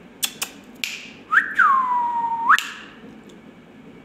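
A single clear whistle: a quick upward flick, then a note that swoops down and holds steady for about a second before sweeping sharply back up. A couple of short clicks come just before it.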